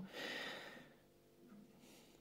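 A soft breath from the person speaking, lasting under a second and fading, then near silence with faint kitchen room tone.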